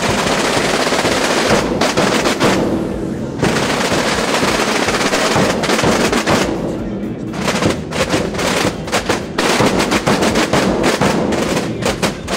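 A Bajo Aragón drum group of tambores (snare-type drums) and bombos (large bass drums) playing together: a loud, dense drum roll of many drums, with separate strokes standing out more clearly in the second half.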